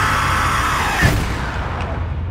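Trailer sound design: a loud rushing swell with a high tone that bends downward, ending in a sharp hit about a second in, followed by a low steady rumble.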